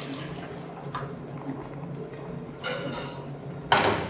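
A pale liquid for crème pâtissière poured from a stainless steel bowl into a stainless saucepan, with a sharp metal knock near the end.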